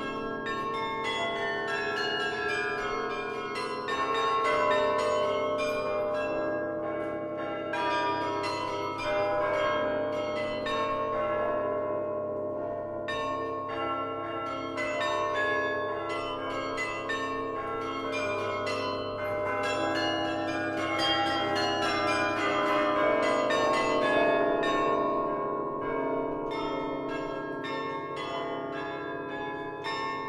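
Historic Hemony carillon played from its baton keyboard: a continuous, dense stream of struck bronze bell notes forming a melody, each note ringing on into the next. A low bell note sounds beneath through much of the passage.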